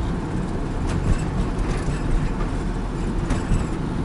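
Steady low rumble of engine and road noise inside the cabin of a moving work van.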